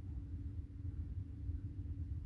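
Quiet room tone: a low steady hum and rumble with no distinct event.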